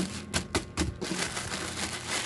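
Clear plastic packaging crinkling and crackling as hands squeeze and twist a bagged bundle of plastic bubble-wand tubes, with a quick run of sharp clicks in the first second.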